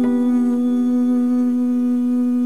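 A man humming one long, steady note over a nylon-string classical guitar. A single guitar note is plucked right at the start and left to ring.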